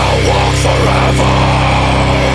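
Metalcore band playing loudly: heavily distorted electric guitars and bass holding low sustained notes, with drums underneath.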